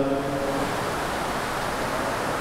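Steady, even hiss of background noise. In the first half-second the tail of a man's amplified voice fades into it.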